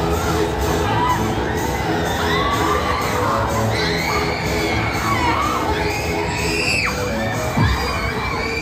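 Riders on a spinning fairground thrill ride screaming and shouting, many overlapping high-pitched cries rising and falling, over the ride's music. A low thump comes near the end.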